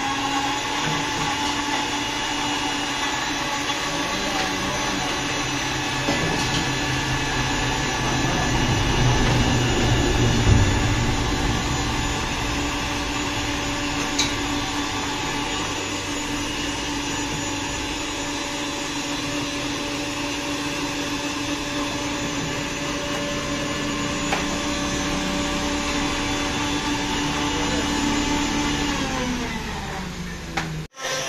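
Electric juice blender running steadily while blending fruit into juice, its motor winding down just before the end.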